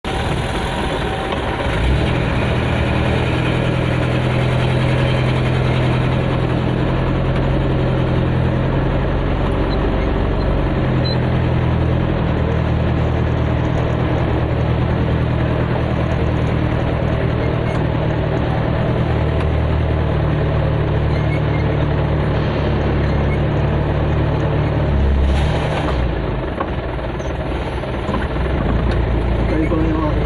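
Vehicle engine running with a steady low drone as it drives slowly over a rough, muddy dirt yard and road, its pitch shifting now and then, with a brief swell near the end.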